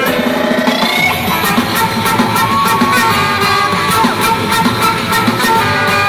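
Live rock band playing loud: electric guitars and drum kit, with a panpipe carrying the melody in long held notes.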